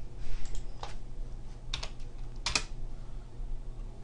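About four separate keystrokes on a computer keyboard, spread over the first three seconds, over a low steady hum.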